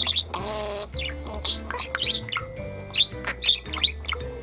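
Budgerigar chattering and chirping in quick, short bursts, over background music with steady held notes.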